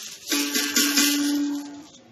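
Berimbau: its steel wire struck with the stick about a third of a second in, ringing one steady note for about a second and a half before it fades. The instrument is being tried for its tone.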